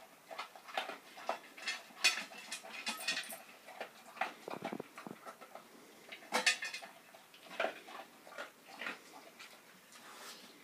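Dog eating from a stainless steel bowl: irregular crunches and clinks of the metal bowl.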